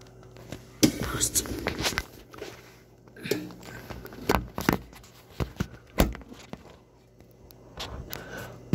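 A series of sharp knocks and handling noises, thickest in the first two seconds and then in single strikes, with some low, indistinct voice.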